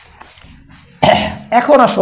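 A man clears his throat with a cough about a second in, followed by a short voiced sound.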